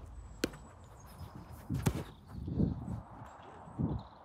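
A football kicked on an outdoor pitch: a sharp thump about half a second in, then a second sharp knock over a second later.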